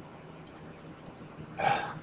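A pause in a man's narration: faint room tone with a steady high-pitched electronic whine, then a brief audible breath near the end, from a voice he says is going.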